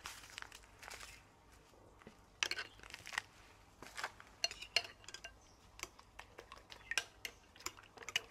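Metal spoons clinking and tapping against a ceramic bowl as MSG is added to beaten eggs, a series of light, irregular clinks.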